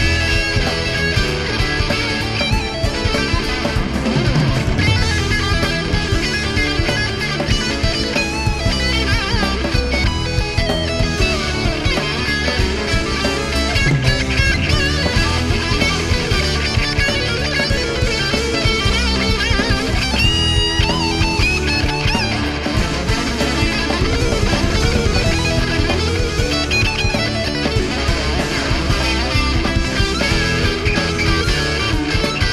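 Live instrumental rock band playing, led by a fast shred-style electric guitar solo over bass, drums and keyboards. A bright, high held guitar note rings out about two-thirds of the way through.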